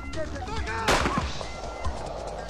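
A single sharp pistol shot about a second in, fired into the air as a warning shot, with a short ringing tail after it.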